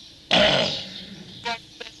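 An elderly man coughs once: a sudden, loud, rough burst that fades over about half a second, followed by a couple of brief faint sounds.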